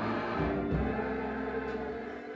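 A choir singing slow, held notes.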